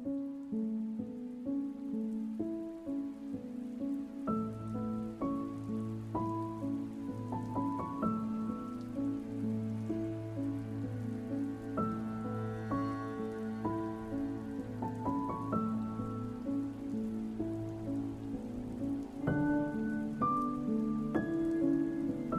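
Slow relaxation music of piano and harp notes over a steady patter of rain, with Tibetan singing bowls in the mix. A low held hum comes in about four seconds in and drops away after about fifteen seconds.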